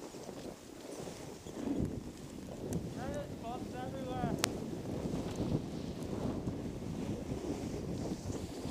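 Wind rushing over the microphone and skis hissing on snow during a downhill ski run. About three seconds in, a high voice calls briefly in a run of short rising-and-falling notes, ending with a sharp click.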